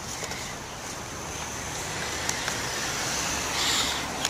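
Road traffic: a steady rush of noise that slowly grows louder over a few seconds.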